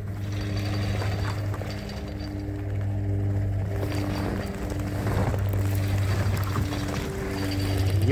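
A vehicle engine running steadily with a low, even hum, while a stranded SUV is being towed out of water and broken ice.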